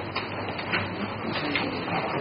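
Paper rustling and shuffling as pages of notes or books are turned, a soft uneven rustle with small scrapes.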